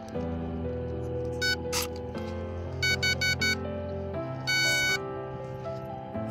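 Electronic beeps from a model plane's speed controller arming after its flight battery is plugged in: one short beep, then four quick beeps, then a longer one, over steady background music.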